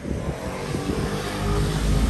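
A motor vehicle's engine running close by, a steady rumble with a low hum that grows louder through the second half.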